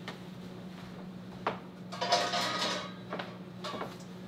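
Cookware being handled out of sight: a single metal knock about one and a half seconds in, then a brief clatter and a few light knocks, over a faint steady hum.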